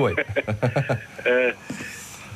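Speech only: a caller's voice coming through a telephone line, then a short pause near the end.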